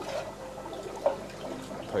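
Aquarium water sloshing and trickling as a clear plastic container is dipped through the tank to scoop up fish, with one sharper splash about a second in.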